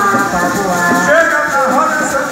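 Cavalo marinho band music: a rabeca fiddle playing a wavering, sliding melody over a steady ganzá shaker rhythm.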